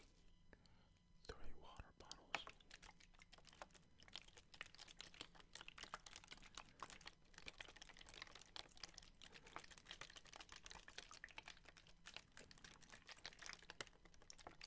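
Plastic water bottles handled and tapped close to the microphone: a dense, rapid patter of small clicks and crinkles from the thin plastic, starting about a second in after a couple of louder knocks.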